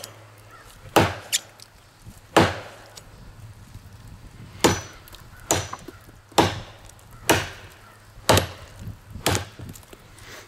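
A Schrade Bolo machete chopping into a small tree trunk: eight sharp chops of the steel blade biting into the wood, roughly one a second, with a longer gap after the second.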